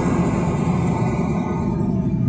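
Steady low rumbling background noise that carries on unchanged through a pause in the sermon.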